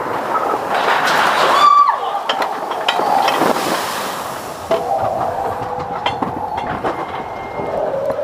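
Matterhorn Bobsleds roller-coaster car running along its steel track, rumbling with scattered clicks and clacks. There is a short high squeal about two seconds in, and a steadier whine in the second half.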